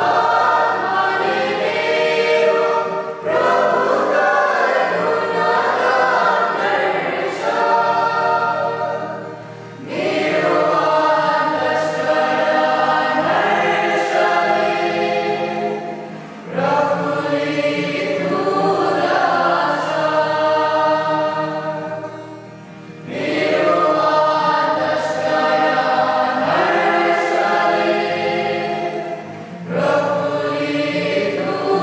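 A mixed choir of women's and men's voices singing a Nepali Catholic bhajan in harmony, with an acoustic guitar accompanying. The singing runs in long phrases with short breaks between them.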